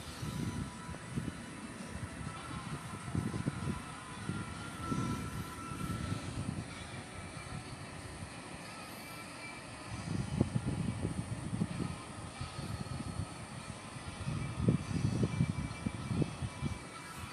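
Irregular low rumbling gusts, typical of wind buffeting an outdoor microphone, swelling twice in the second half, over faint steady background noise.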